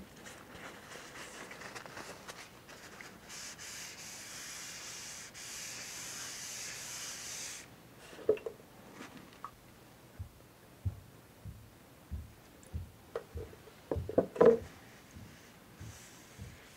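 Danish oil poured onto a bare walnut-and-maple board: a steady hiss of liquid that stops suddenly about halfway through. Then a scatter of soft knocks and rubbing as a gloved hand starts to spread the oil over the wood.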